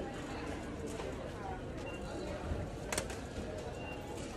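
Indistinct chatter of many shoppers in a busy store, with a single sharp clack about three seconds in.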